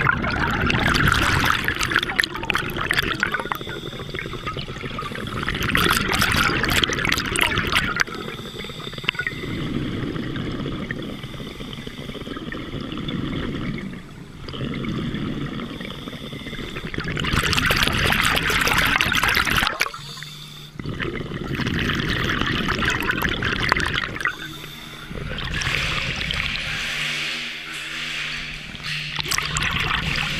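Scuba diver breathing through a regulator underwater: a hissing inhale and a bubbling exhale follow each other in a slow, repeating cycle.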